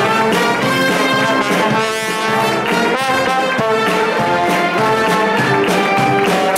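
A charanga brass band playing live, with trumpets and trombones carrying the tune over a steady snare-drum beat.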